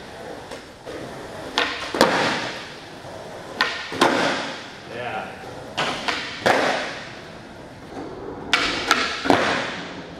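Skateboards doing flip tricks on a concrete floor. There are about four rounds of sharp cracks as tails pop and boards land, with wheels rolling between them, echoing in a large hall.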